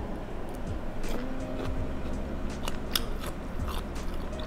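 A person chewing a mouthful of thin rice noodles in tom yum soup, with a run of short wet clicks and smacks from the mouth, most of them in the second half.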